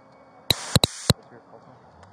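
Two-way police radio giving two short, loud bursts of static about half a second in. Each burst starts and cuts off sharply, over a low steady hum.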